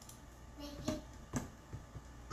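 Faint children's voices in the room, with two sharp taps about a second and about a second and a half in.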